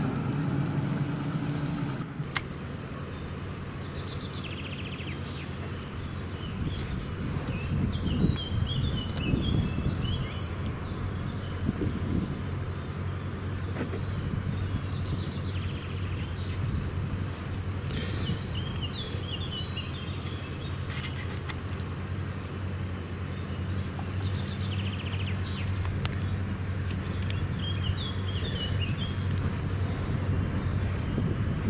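A cricket trilling steadily close by, a high fast-pulsing tone that starts about two seconds in, over the low hum of a tractor mowing in the distance. A few short bird chirps come now and then.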